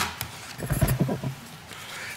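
Handling noise on a lectern microphone: a sharp click, then low bumps and a short rumble.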